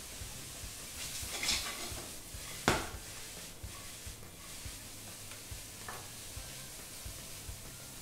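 Chopped vegetables stir-fried over high heat in a stainless steel kadhai, with faint sizzling and the scrape of a wooden spatula. One sharp clack comes a little under three seconds in.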